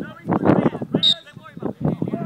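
Several people talking and calling out, with a brief high-pitched pip about halfway through.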